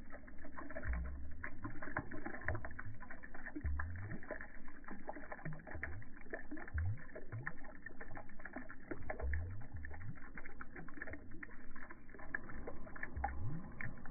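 A stream of bubbles rising through shallow water and breaking at the surface. There is a continuous patter of small pops and clicks, with a short low gurgle every second or two.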